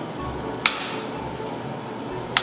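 A metal utensil knocks once against a small frying pan as butter sticks are broken up in it.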